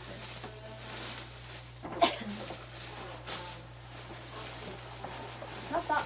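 Tissue paper rustling and crinkling as a present is pulled out of a paper gift bag, with irregular scrunching and a sharp snap about two seconds in.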